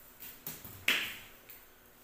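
Open wood fire crackling, with a few sharp snaps; the loudest comes about a second in.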